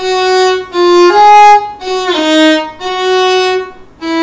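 Solo violin played slowly on the D string: about six single bowed notes in E major, with the first-finger note placed high on one and low on another. Each note is a separate stroke with short breaks between.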